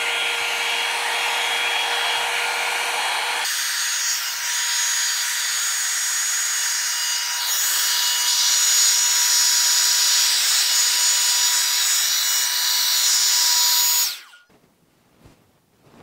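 A Revlon hot-air dryer brush running, its motor and blowing air loud and steady, with a thin whine. The tone shifts about three and a half seconds in and again a few seconds later. It switches off abruptly near the end.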